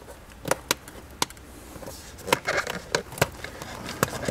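Plastic interior trim and push-clips of a Honda Civic being pried and popped loose, giving sharp separate clicks and snaps: a few single clicks in the first second and a half, then a quick cluster about two and a half seconds in and another click after that.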